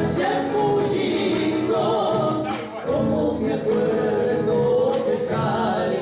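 Argentine folk song performed live: several voices singing in harmony over strummed acoustic guitar, with a short break between phrases about halfway through.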